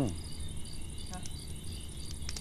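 Crickets chirping steadily, in even pulses about four a second.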